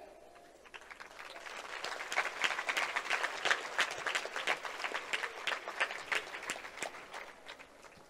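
Audience applauding: many hands clapping together, building up about a second in and dying away near the end.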